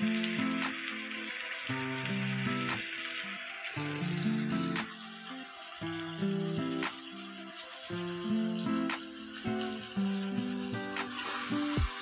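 Background instrumental music with sustained notes, over the faint sizzle of an onion-tomato masala frying in a steel kadhai as spice powder is stirred in.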